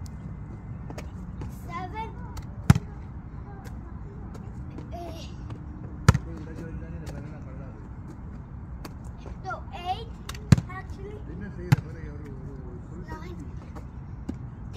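A basketball thudding four times, a few seconds apart, as it is shot and handled on an asphalt court, over a steady low rumble, with a few faint short voice-like calls in between.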